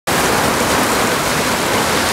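Steady, loud rush of water from a FlowRider sheet-wave machine, its pumped sheet of water racing up the ride surface.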